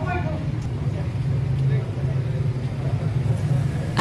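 Outdoor ambience: a steady low rumble under faint, indistinct voices of people talking.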